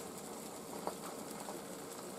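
Faint sizzling of an egg omelette cooking slowly on low heat in a nonstick frying pan, with a light tick or two.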